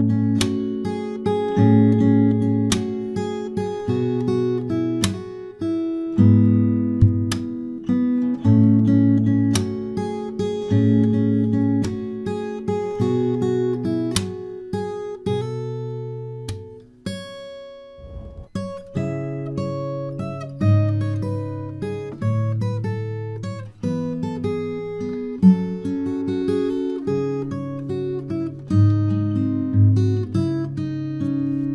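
Steel-string acoustic guitar with a capo, played fingerstyle. A plucked melody rings over bass notes, with sharp percussive slaps on the strings every couple of seconds and a brief pause a little past halfway.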